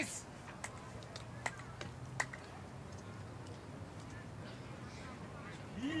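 Quiet outdoor ambience with a few faint, sharp clicks in the first couple of seconds, then a man's voice starting near the end.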